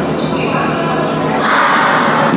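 Badminton rally on an indoor court: racket strikes on the shuttlecock and footfalls on the court floor, echoing in a large hall, with voices mixed in.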